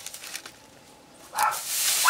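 A large straw broom sweeping a dirt yard: a loud scraping stroke across the ground starts about a second and a half in.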